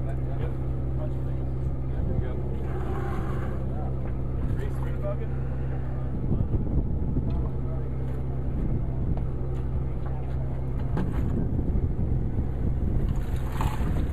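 Boat's engine running with a steady low hum, while a loaded dredge is hauled aboard with scattered knocks and rattles, busiest about six seconds in and again near the end.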